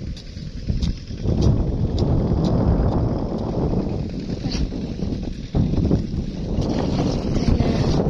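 Wind buffeting the microphone: a rough low rumble that swells and dips, with a brief lull about five and a half seconds in.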